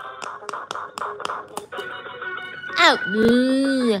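Bear-shaped electronic quick-push game toy being played: quick taps on its light-up buttons, about five clicks a second, over the toy's electronic tones. Near the end comes a steep falling swoop and a long drawn-out 'oh'.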